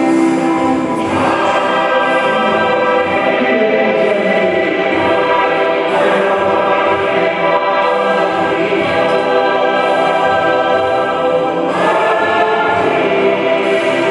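Many voices singing a hymn together, a church congregation or choir holding long notes, the chord changing about a second in, again around six seconds and near twelve seconds.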